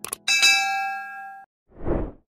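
Subscribe-animation sound effect: two quick clicks, then a bright notification-bell ding whose ring holds for about a second and cuts off abruptly. Near the end a short rushing noise swells and fades, a transition sound effect.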